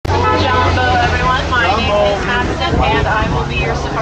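Safari truck engine running with a steady low hum, under the driver's spoken tour narration.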